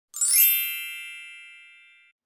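A bright chime sound effect for an intro logo: a single ding with a high, glittering shimmer that strikes just after the start and rings out, fading away over nearly two seconds.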